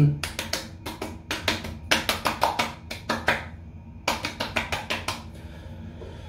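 Quick hand slaps on bare skin, about five or six a second, in two runs with a short pause between them: aftershave being patted onto the face and neck.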